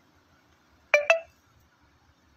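Two short electronic beeps in quick succession about a second in, typical of an induction cooktop's touch-control panel registering a key press.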